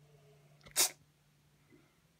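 A girl's single short, sharp burst of breath forced out through the nose, sneeze-like, a little under a second in.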